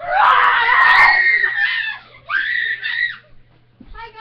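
Girls screaming: a long, loud, high shriek of about two seconds, then a second, shorter shriek.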